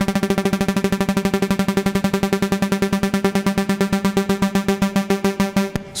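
ASM Hydrasynth playing one steady note whose volume is chopped by a sawtooth LFO into rapid repeated plucks, about nine a second. The LFO's rate is driven by an envelope. The note stops shortly before the end.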